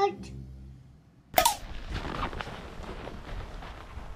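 A child's short "Hot!" at the start. A little over a second in comes a sudden sharp bang, then a steady outdoor rustle with irregular crunches of a man's footsteps running over snow.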